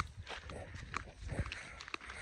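Footsteps crunching and scuffing on a dry dirt path littered with leaves, a few irregular steps about half a second apart.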